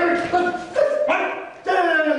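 A voice letting out a string of short, high, held cries, about half a second each, in a wailing run.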